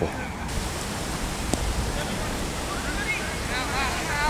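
Steady wind rush on an outdoor microphone, with faint distant voices coming through near the end.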